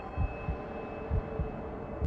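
Heartbeat sound effect: a low double thump, lub-dub, about once a second, over a steady background hum.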